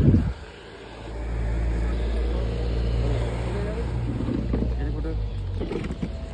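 A thump at the very start, then a motor vehicle's engine running close by: a steady low rumble that sets in about a second in and fades a little near the end, with indistinct voices.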